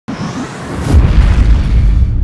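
Logo-intro sound effect: a noisy swell that breaks into a loud, deep bass boom about a second in, the low rumble carrying on after it.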